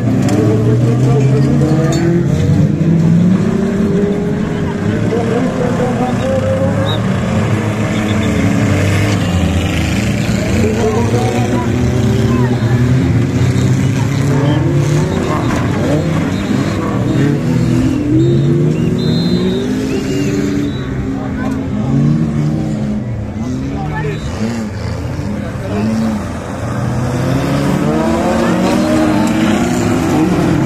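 Several stock-car engines racing together on a dirt track, their notes rising and falling as the drivers rev through the bends.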